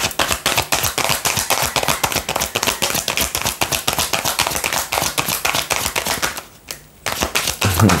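A tarot deck shuffled by hand: a rapid, steady run of card snaps that pauses briefly a little past six seconds in, then resumes.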